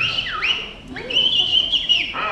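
High-pitched whistling from the show's soundtrack: a swooping whistle that slides down and back up, followed about a second in by a steady, warbling whistle held to the end.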